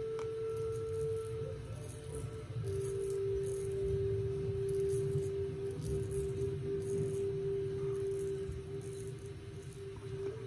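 Straight razor scraping through lathered stubble in short repeated strokes, a faint crackle. Under it, background music with a long held note that drops to a lower held note about two and a half seconds in.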